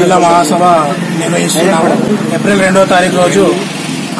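A man speaking Telugu in continuous speech.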